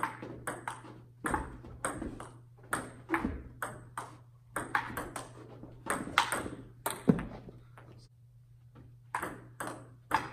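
Table tennis rally: the ball clicking off the paddles and the table in quick alternation. The clicks pause for about two seconds past the middle before play resumes, with a steady low hum underneath.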